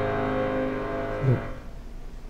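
Keyboard music holding a final chord that fades and then stops about a second and a half in, with a short downward slide in pitch just before it ends.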